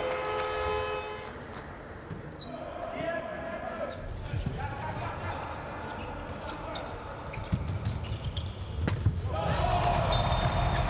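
A handball bouncing on the court floor during play, with short sharp knocks of ball and shoes and players' shouts. There is a louder single knock near the end.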